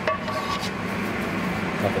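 A spatula scraping mashed potatoes out of a pot, with a short knock right at the start, over a steady low hum.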